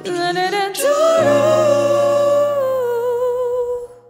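Woman singing the closing line of an R&B ballad over a karaoke instrumental track: a short run of notes, then a rise into one long held note with vibrato that ends near the end as the backing fades out.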